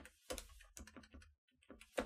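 Faint typing on a computer keyboard: about half a dozen light keystrokes with short pauses between them.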